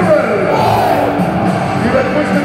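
Loud music played over an ice hockey arena's PA system during the player introductions, with crowd noise underneath.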